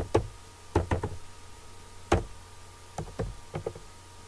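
Computer keyboard being typed on slowly, one key at a time: about ten separate, unevenly spaced keystrokes, the loudest a little after two seconds in.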